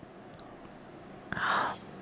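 Quiet background, then one short breathy whisper close to the microphone just past halfway through.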